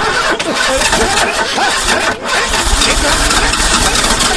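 A car engine being started with the ignition key: a loud, harsh engine noise that begins suddenly as the key is turned.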